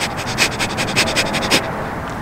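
A woman breathing in and out rapidly in short, quick breaths, about seven a second, like a panting dog, a demonstration of fast breathing. The breaths stop about a second and a half in.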